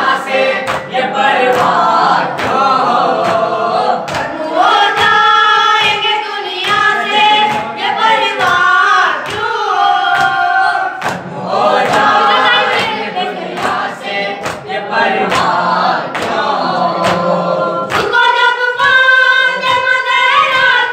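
Noha, a Shia mourning chant, sung by a group of young male voices in chorus with a lead reciter, over a steady beat of chest-beating (matam) at roughly three strikes every two seconds.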